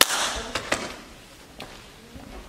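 A sharp slap of two hands meeting in a high-five, then a few light footsteps on a wooden stage floor.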